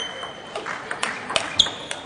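Table tennis match sounds: a high shoe squeak on the court floor right at the start and another about 1.6 s in, with a few sharp ball clicks between them.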